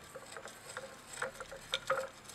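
Glass stirring rod clicking and scraping against a glass beaker while a slurry is stirred in an ice bath: faint, irregular small ticks.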